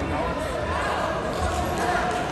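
Indistinct voices in a large hall, spectators and coaches calling out over one another, with low dull thumps now and then.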